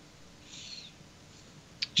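A quiet pause in a man's speech, with one faint, short hiss of breath about half a second in and a small mouth click just before he speaks again.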